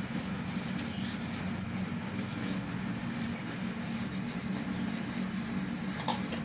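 Steady low rumbling background noise with a constant hum, unchanging and without distinct events.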